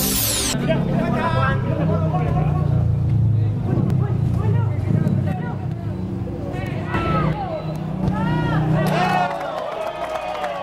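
Field-side sound of an amateur football match: players and spectators shouting over a low steady rumble, with louder rising-and-falling shouts near the end as the attack reaches the goalmouth. A short electronic whoosh from the intro graphic cuts off about half a second in.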